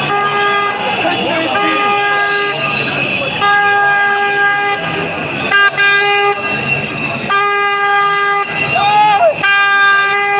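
A horn sounding one steady note in repeated long blasts, each about a second long, six times, over the noise of a crowd's voices.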